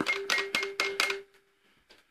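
Quick run of plastic clicks from the keys of a toy electronic keyboard being tapped, over a steady held electronic note; the clicks stop after about a second, and the note fades out soon after.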